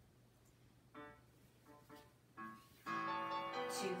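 Solo piano music begins about a second in: a few separate notes, then fuller sustained chords from about three seconds, as the accompaniment for a ballet barre exercise starts.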